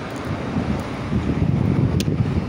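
Wind buffeting the microphone, a low rushing noise that gets stronger after about a second.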